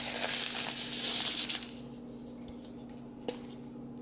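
Small clay granules poured into a clear cup of clay pebbles, a dense rattling patter that stops after about two seconds. A single sharp click follows near the end.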